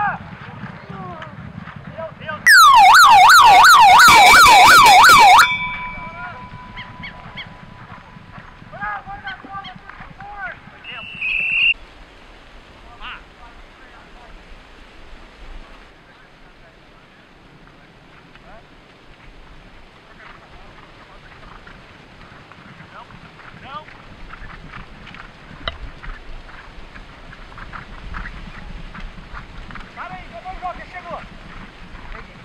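Electronic siren sounding loudly for about three seconds, its pitch sweeping rapidly up and down, about three sweeps a second, then cutting off.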